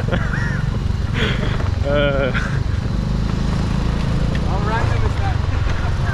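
Motor scooter running as it rides along, a steady low rumble, with short bursts of voices over it about one, two and five seconds in.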